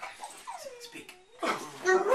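A pit bull terrier's drawn-out whine that slides down in pitch, the dog's 'talking' answer to being told to speak, followed by a short louder vocal sound near the end.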